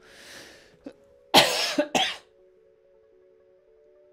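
A man coughing twice, sharply, about a second and a half in, after a breathy intake of air; the coughs come from a tickle scratching the back of his throat.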